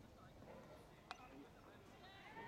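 Faint, distant shouts and calls of football players across an open pitch, with a single sharp click about halfway through.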